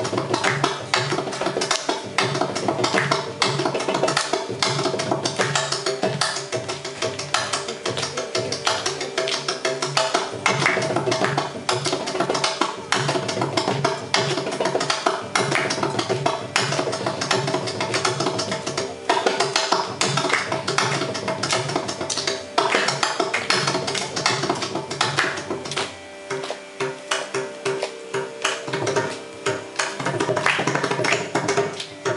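Mridangam played solo in the thani avartanam, the percussion solo of a Carnatic concert: a dense, fast stream of strokes over a steady drone, thinning to sparser, evenly spaced strokes near the end.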